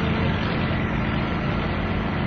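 Steady background hum and hiss with a faint low tone running through it, the even noise of a machine such as a fan or air conditioner.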